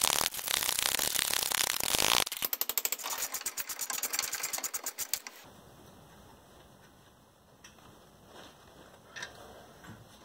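Ratchet wrench running in the 14 mm caliper bolts on a rear disc brake: a rapid, dense ratcheting at first, then a fast, even run of clicks that stops about five seconds in, followed by a few faint handling clicks.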